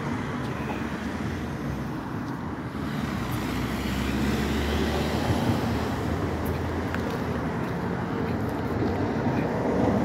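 Road traffic on a multi-lane city street, a steady noise of passing vehicles with a low rumble that swells about four seconds in and rises again near the end.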